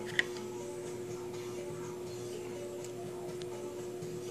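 A faint steady hum held at one pitch, with a light click just after the start.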